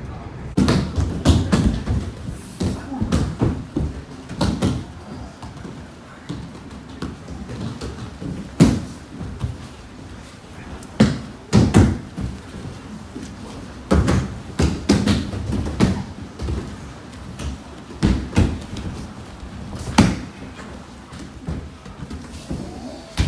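Repeated heavy thuds and slaps of bodies hitting the mats as aikido partners are thrown and take breakfalls. The thuds come irregularly, about one to two seconds apart, and the loudest ones come in quick pairs.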